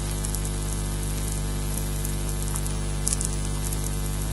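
Osprey nest-camera microphone picking up a steady low electrical hum, with scattered light ticks of raindrops, a little cluster of them about three seconds in.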